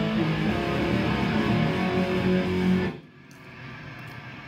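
Metal band playing distorted electric guitar and bass guitar together, stopping abruptly about three seconds in.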